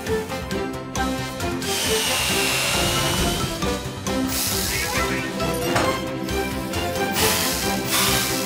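Power-drill sound effects over children's cartoon background music: a long whirring burst about two seconds in, then shorter bursts later, as the drill is worked on a wheel hub.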